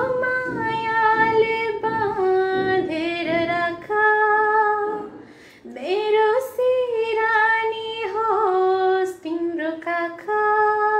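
A woman singing a Nepali song unaccompanied, in two phrases of long held notes with a short breath pause about five seconds in.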